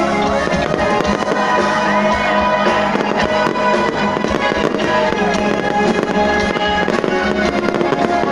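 Fireworks going off: many sharp cracks and bangs in quick succession, heard over loud music.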